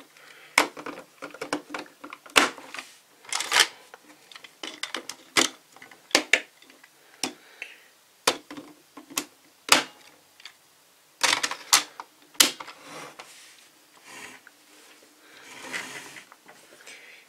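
Hard plastic parts of a DX Zyuoh Cube combining-robot toy clicking and clacking as they are pulled apart, snapped together and set down on a wooden table. The sharp clicks come irregularly, with a quick run of them about eleven seconds in.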